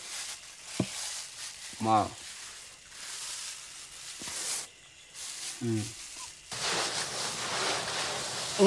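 A man's brief murmured syllables ("más", "mm") over a steady soft hiss, with one click about a second in; a louder, even rushing noise sets in near the end.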